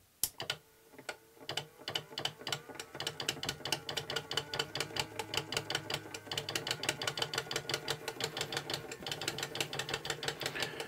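Homemade DC-motor-driven waste-oil pump and timer mechanism switched on and ticking, a few scattered clicks at first that quicken within about three seconds into a steady rapid ticking, about six a second. The ticking is the pump working, feeding oil into the stove.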